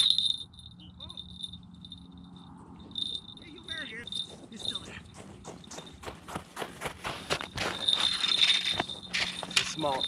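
A sharp knock at the start, then a quieter stretch, then a rapid run of crunches in snow and ice from about five seconds in, several a second.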